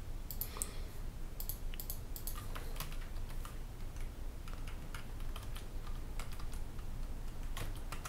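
Typing on a computer keyboard: a run of quick keystrokes in the first few seconds, a few scattered clicks after, and a short burst of keystrokes near the end.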